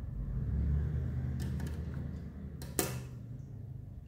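A low rumble that swells about a second in and slowly fades, with a few faint clicks and one sharp click near three seconds in.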